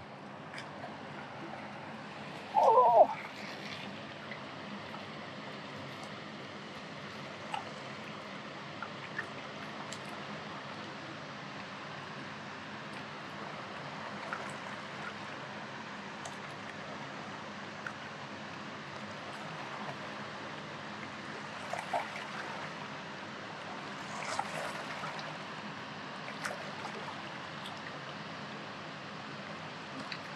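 River water running steadily, with a few faint clicks and one brief, loud sound about three seconds in.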